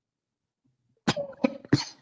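Near silence for about a second, then a person's short laugh in three breathy bursts.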